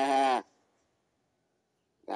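A person's voice imitating a lamb's bleat: one drawn-out, wavering 'baa' that ends about half a second in.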